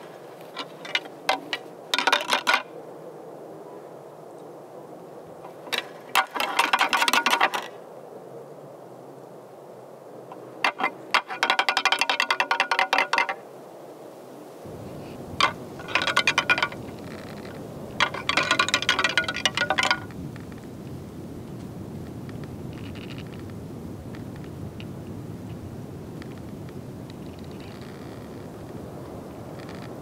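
A pair of deer antlers rattled together in bursts of rapid clacking, the hunter's rattling call that mimics two bucks sparring. There are six bursts of a second or two each, and a steady low rumble comes in about halfway.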